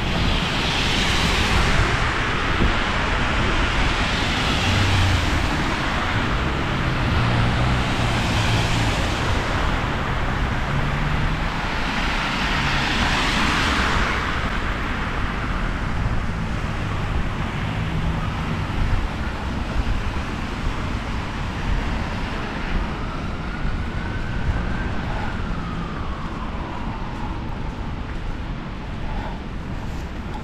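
City traffic on a slushy, snow-covered street: cars pass with a hiss of tyres through wet snow, in swells loudest near the start and again just before halfway, over a low engine hum. In the second half a faint distant siren rises and falls.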